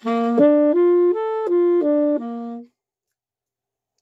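Unaccompanied tenor saxophone playing a short phrase of about seven connected notes that climb and come back down, the last one held, stopping shortly before three seconds in.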